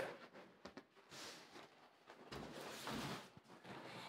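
Faint scraping and rustling of a large cardboard box being lifted and moved, with a small knock near the end.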